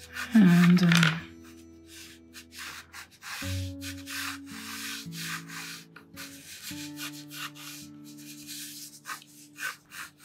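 A watercolour pencil scratching across paper in many short sketching strokes, over soft background music with long held notes. A brief louder swell comes just after the start.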